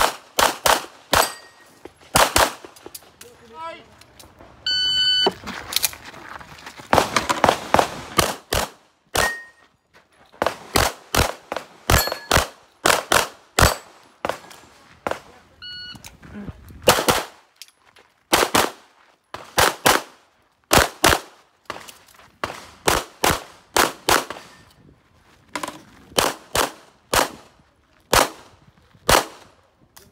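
Pistol shots in rapid strings on an IPSC practical-shooting stage, fired in quick pairs and runs with short pauses between. A shot-timer start beep sounds twice, about 5 s in and again about 16 s in, each followed by a new string of fire.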